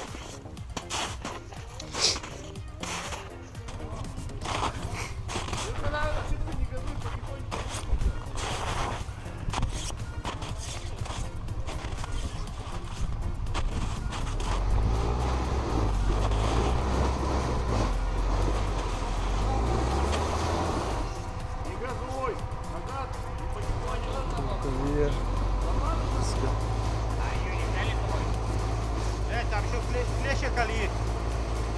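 Quad bike (ATV) engines running with a steady low drone that gets louder about halfway through, with scattered knocks early on and indistinct voices.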